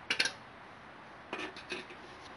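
Light clinks and knocks of hard objects being handled, in two brief clusters: one just after the start and another about a second later.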